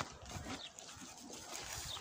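Quiet outdoor sound with faint footsteps and rustling through dry grass on stony ground.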